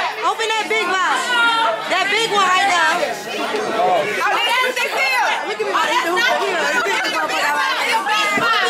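Loud, overlapping chatter of several voices talking at once, with no clear words.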